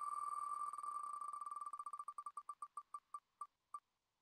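Wheel of Names spinner's electronic tick sound: a short high-pitched tick for each name slice passing the pointer, so fast at first that the ticks run together, then slowing steadily as the wheel coasts toward a stop.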